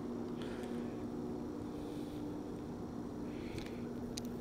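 A steady low hum under faint outdoor background noise, with no clear events.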